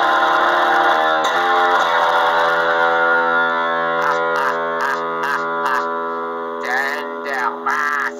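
Electric bass with reverb: a chord struck and left ringing, fading slowly over several seconds. From about four seconds in come short scratchy noises from the strings.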